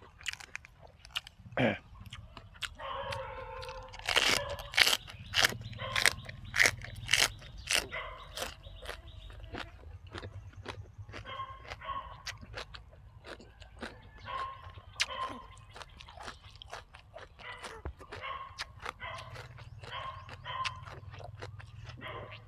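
Crisp crunching and chewing of raw fresh vegetables close to the microphone, a quick run of bites that is loudest in the first half and then goes on more sparsely.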